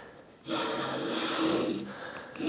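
A razor-sharp hand plane taking one stroke along the edges of two walnut boards clamped together, jointing them both at once. The cut starts about half a second in and lasts just over a second.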